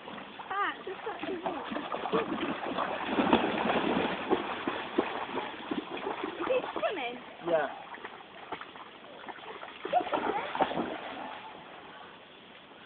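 A dog splashing and wading through a shallow stream, the water sloshing around it. Short, high, sliding vocal sounds come a few times over the splashing.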